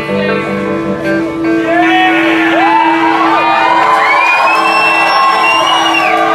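A rock band playing live, led by an electric guitar. From about a second and a half in, the audience whoops and shouts over the music.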